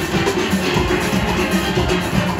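A full steel band of steel pans, from high tenor pans to large bass pans, playing a fast calypso arrangement together, with a drum kit keeping a steady driving beat underneath.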